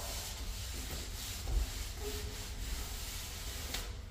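Damp sponge float rubbing over the edges of a fresh top coat of joint compound, a soft scrubbing in repeated strokes.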